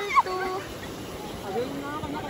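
Faint, scattered high-pitched voices calling out in short fragments over a steady background hiss.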